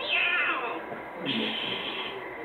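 A high-pitched call that falls in pitch in the first second, then a second, shorter high call a little later.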